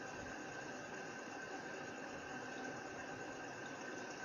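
Steady low background hiss with a faint, thin, high, steady tone running through it, and no distinct events.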